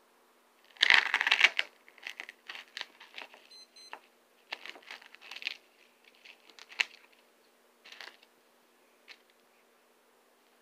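A knife blade slicing and tearing through a block of coarse foam. The loudest stretch of cutting comes about a second in, followed by a run of shorter scratchy cuts.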